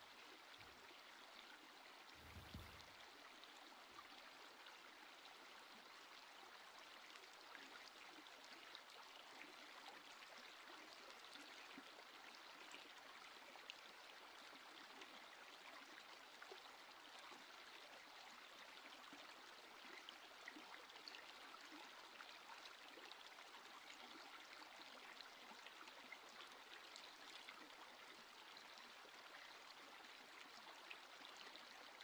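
Faint, steady running-water ambience like a gently flowing stream, an even trickling hiss. A soft low thump comes about two and a half seconds in.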